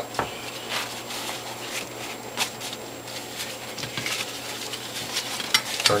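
Hands in rubber gloves folding a juicing cloth around a bamboo liner and orange pulp in a glass tray: soft rustling of fabric with a few scattered light clicks and taps.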